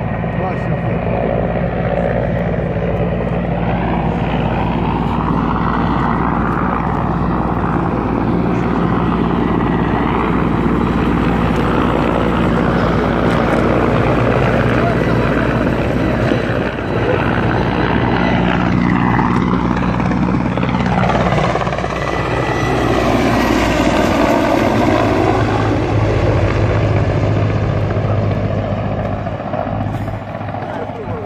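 Military helicopter running loudly and steadily overhead, its rotor noise sweeping slowly up and down in pitch as it moves.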